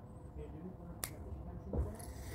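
A single sharp click about a second in, then a dull low thump, over a low steady hum.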